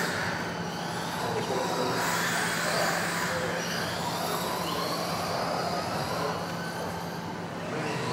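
Several 2WD radio-controlled model cars racing on a carpet track. Their electric motors whine in overlapping tones that rise and fall as the cars accelerate and brake, with the sound echoing around a large sports hall.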